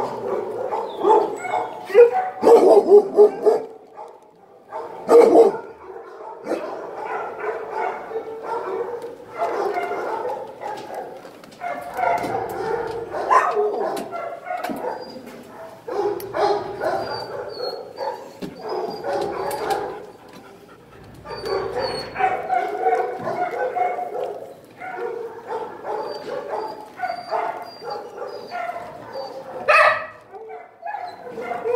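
Dogs barking in shelter kennels, almost without a break, with a few louder sharp barks in the first few seconds.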